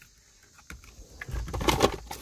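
About a second in, a spray bottle of glass cleaner is handled at the windshield. Near the end there is a short burst of rustling with a few quick clicks.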